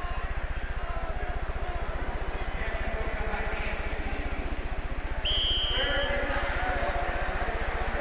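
Crowd noise in a large domed stadium over a steady low hum from an old broadcast recording. About five seconds in, a short high whistle blast, and the crowd grows a little louder after it.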